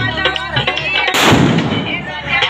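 A single loud firecracker bang about a second in, its noise dying away over most of a second, over loud dance music.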